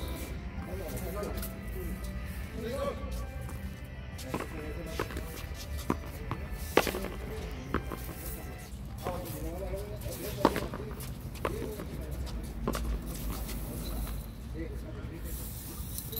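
Frontón ball being hit and slapping off the concrete wall during a rally: a series of sharp smacks, roughly one a second, the loudest about seven and ten and a half seconds in, over background music and voices.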